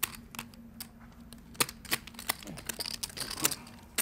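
Poker chips clicking together in irregular taps as a hand handles a stack of chips, with the sharpest click about a second and a half in. A faint steady hum sits underneath and stops a little past halfway.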